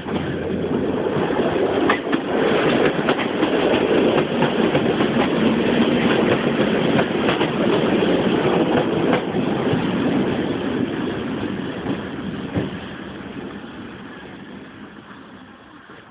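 EN57 electric multiple unit running into the station along the platform, its wheels rumbling with repeated clicks over the rail joints. It grows loud in the first couple of seconds, then fades steadily over the last few seconds as the train runs on and slows.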